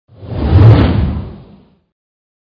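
Whoosh sound effect of a channel logo intro, with a deep rumble underneath, swelling to a peak under a second in and fading away about a second later.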